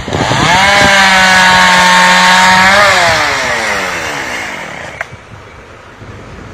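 Chainsaw revving up to full speed, held steady for about two seconds, then easing off and dying away.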